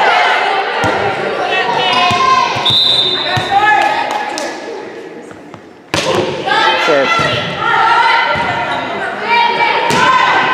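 Volleyball in a gym: players calling out and spectators talking, a referee's whistle blown once for under a second about three seconds in. The voices die down, then a sharp smack of the ball is heard about six seconds in, followed by players shouting during the rally.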